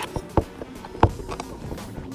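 Phone microphone handling noise: rubbing and scuffing against skin and fabric with a few sharp knocks, the loudest about a second in.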